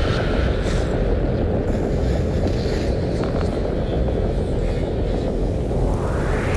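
A steady, low rumbling noise bed from the video's sound design, with no beat, and a rising whoosh sweep starting near the end.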